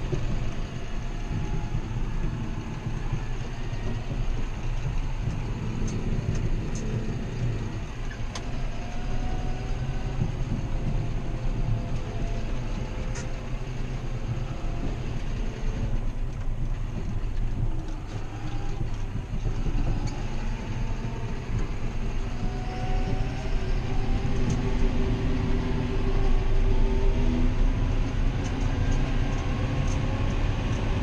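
John Deere 7530's six-cylinder diesel running steadily as heard inside the cab, with faint rising whines as the AutoPowr transmission picks up road speed. It grows louder in the second half.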